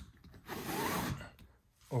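Pleated sunshade on a camper-trailer window being slid along its frame: a brief scraping rub lasting about a second.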